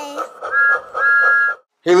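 Two toots of a train-whistle sound effect in an intro jingle, a short toot followed by a longer one.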